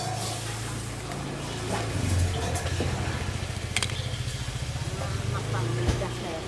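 A motorbike engine running close by, a low pulsing hum that grows louder about two seconds in, with a sharp clink near the middle.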